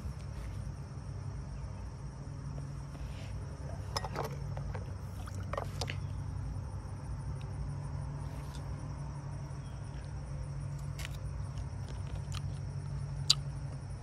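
Quiet handling sounds: a few faint clicks and scrapes as a kitchen knife cuts a wedge from a halved ripe persimmon, over a steady low hum.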